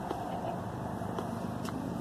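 Steady outdoor street ambience, a low even rumble with a few faint ticks.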